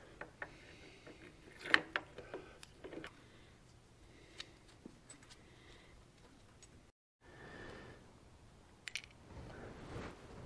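Light metal clicks and clinks as a gear and its small housing are handled and fitted onto the engine, the sharpest knock about two seconds in.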